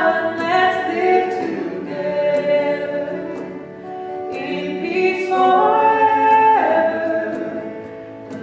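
Choir singing a slow worship song, with long held notes.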